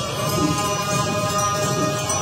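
Mantra chanting with music: voices hold one steady sung pitch throughout.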